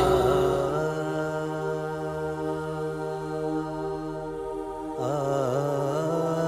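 Background music: a drone of long held notes, with a short wavering phrase about five seconds in.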